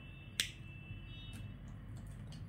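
A single sharp click about half a second in as a felt-tip marker is handled, with a couple of fainter ticks later, over a low steady hum.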